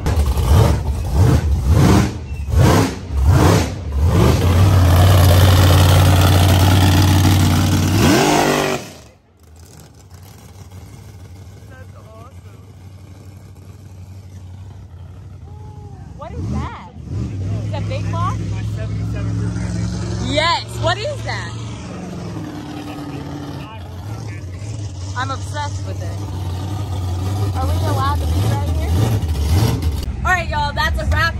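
Pickup truck engine revving in several surges and then running hard and steady as it tows a loaded trailer, cut off abruptly about eight seconds in. After a quieter stretch, a lifted pickup's engine runs steadily as it drives across the lot.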